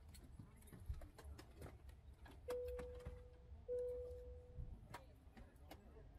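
Airliner cabin chime sounding twice at the same pitch, each ding ringing about a second, the second following right after the first: the seatbelt sign being switched off at the gate. Scattered clicks and rustles of passengers moving in their seats around it, over a low cabin rumble.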